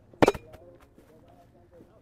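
A roundnet serve: a hand smacks the ball and the ball hits the small trampoline-style net, two sharp smacks in quick succession just after the start.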